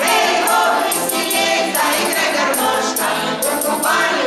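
A folk vocal group, mostly women, singing together to accordion accompaniment. A high jingling percussion keeps a regular beat.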